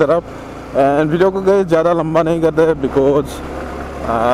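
A man talking over the steady low drone of a sport motorcycle ridden at moderate speed, with wind noise on the microphone. The engine and wind noise stand alone briefly at the start and again near the end.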